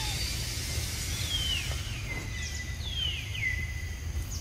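Outdoor ambience with a steady low rumble, and a bird whistling a few times: high notes gliding down, each running into a held steady note.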